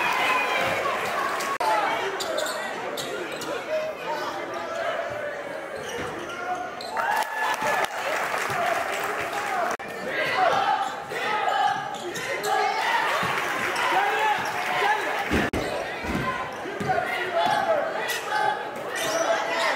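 Basketball bounces on a hardwood gym floor during live play, mixed with players' and spectators' voices calling out across the gym.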